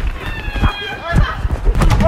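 Excited shrieking and yelling voices while people run, with quick footfalls and knocks near the end over a low rumble on the microphone.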